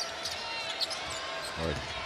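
A basketball being dribbled on a hardwood court, a few sharp bounces over steady arena crowd noise.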